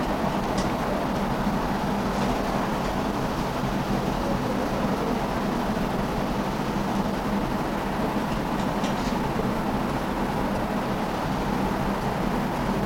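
Steady background noise with a low hum, like air conditioning in a small room. Faint scratches of a marker pen writing on a whiteboard come through a few times.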